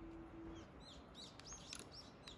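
Faint bird chirping: a run of short, quick, high chirps, several a second, starting about half a second in.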